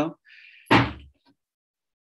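A single sudden thud about two-thirds of a second in, dying away within half a second, followed by silence.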